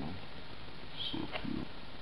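A brief low vocal sound from a man, like a short murmur, about a second in, with a faint click in the middle of it, over steady background hiss.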